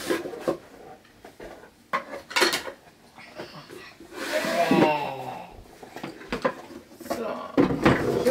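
Knocks and scrapes of a wooden storage drawer being handled and filled: a few sharp wooden clacks near the start and around two seconds in, with more near the end.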